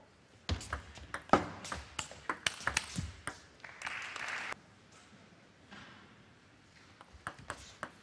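A table tennis rally: quick, sharp clicks of the ball striking the bats and the table for about three seconds. A short burst of crowd noise follows as the point ends, and a few more ball clicks come near the end.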